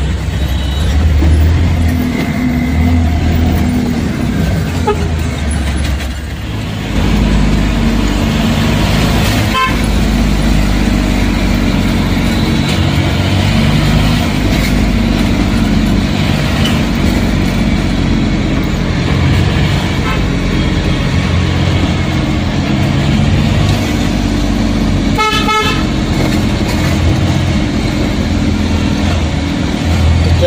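Steady diesel engine and road noise inside the cab of an Ashok Leyland Dost pickup truck on the move, with a brief vehicle-horn toot about ten seconds in and a longer honk about five seconds before the end.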